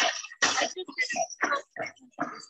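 A person's voice in short, broken bursts, brief sounds that the recogniser did not make out as words.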